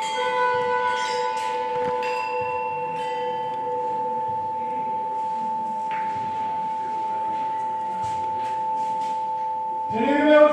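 Bronze bells ringing: several strikes with bright decaying overtones in the first few seconds, then a few fainter ones, over a long steady high tone.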